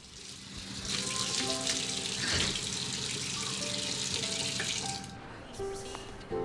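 Water running steadily, starting about a second in and cutting off about five seconds in, with a single thud partway through. Soft background music plays underneath.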